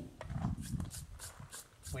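A few faint, irregular light ticks of steel against steel, as an SDS bit used as a punch is set against a wedge-bolt stud in a hole drilled in concrete.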